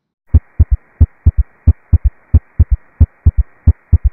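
Recorded heart sounds with an S3 gallop: each lub-dub is followed immediately by a third low thump, in a repeating three-beat rhythm at about one and a half heartbeats a second. A steady hiss runs under the heartbeats.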